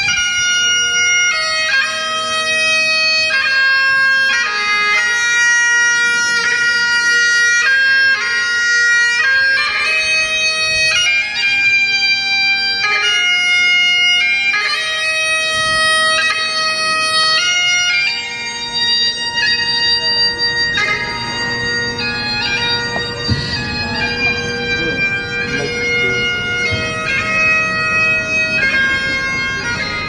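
Great Highland bagpipe playing a slow tune over its steady drones, a little quieter after about eighteen seconds.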